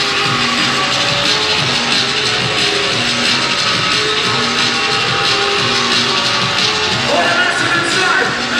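Drum and bass music played loud over a club sound system at a live MC show.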